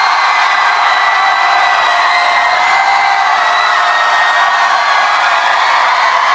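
Audience cheering and screaming: a steady, high-pitched wash of crowd noise with no music.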